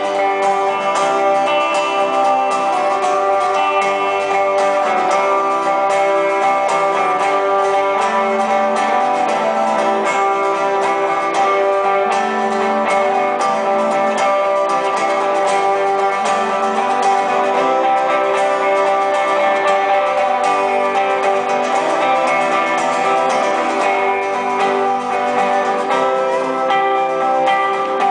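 Live instrumental passage of an acoustic guitar and an electric guitar playing together, with no singing.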